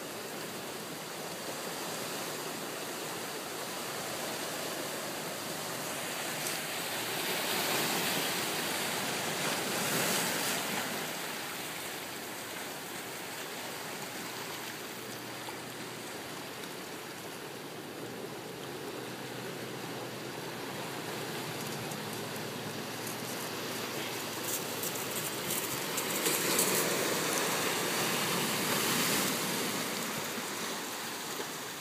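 Ocean surf breaking and washing over rocks along the shore, a steady rush of water that swells louder a third of the way in and again near the end.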